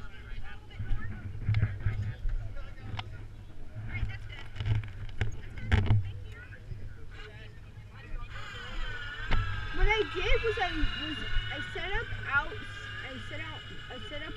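Wind rumbling on the microphone, with indistinct voices talking. About eight seconds in, a steady high whine of several tones starts and keeps going.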